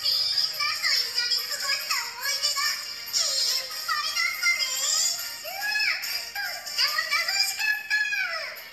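Stage-show soundtrack played back through a phone: music with high-pitched voices singing, their pitch sliding up and down. It sounds thin, with no bass.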